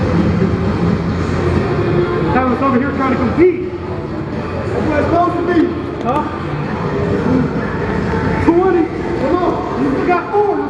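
Voices in short, rising-and-falling calls with no clear words, over a steady low rumble.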